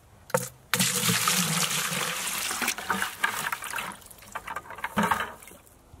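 Water pouring into a plastic bucket, splashing and churning as it fills. The pour starts about a second in, then tapers off and stops near the end.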